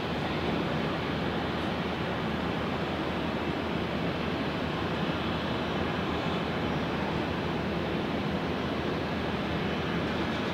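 Airbus A320-232 airliner's jet engines on landing approach, heard as a steady, even rush of noise with no change in level as it comes down to the runway.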